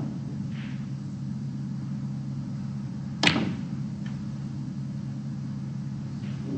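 A snooker cue strikes the cue ball with one sharp click about three seconds in, and a faint second click follows about a second later as the ball travels. A steady low hum runs underneath.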